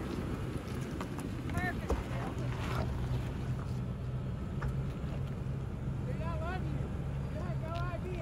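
Lexus GX460's V8 engine running at low revs with a steady low hum as the SUV crawls slowly over rock ledges.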